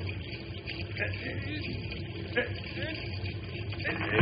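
Faint, brief sounds of a man's voice over a low, steady rumble.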